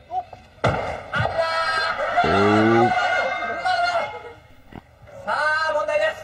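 A knock as a large mallet strikes a stack of big cylindrical blocks about half a second in, with a lighter knock just after. Several excited high-pitched voices shout over it for a few seconds, with a man's short shout among them and more shouting near the end.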